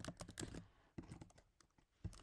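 Faint keystrokes on a computer keyboard. There is a quick run of taps in the first half second, then a few more about a second in.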